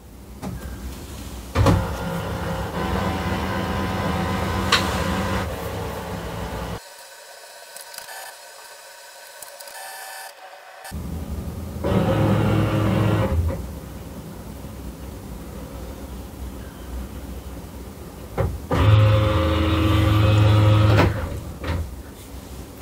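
HP OfficeJet Pro 8135e's automatic document feeder and scanner motor running as a two-page document is fed through. It comes in stretches of steady mechanical running that start and stop: the longest runs from about two seconds in, a short one comes about halfway, and another near the end.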